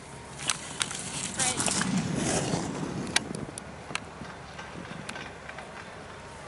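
Outdoor ski-slope ambience: scattered sharp clicks, a swell of rushing noise about two to three seconds in that then dies down, and faint distant voices.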